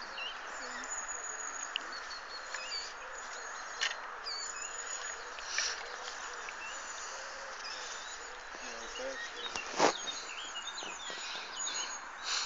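Birds chirping over a steady background hiss, with a few short knocks, the loudest nearly ten seconds in.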